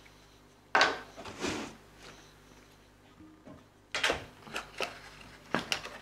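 Items and packaging being handled on a table: a sharp knock about a second in and a softer one just after, then a quiet stretch, then a louder clatter about four seconds in followed by a run of small clicks and rustles of cardboard.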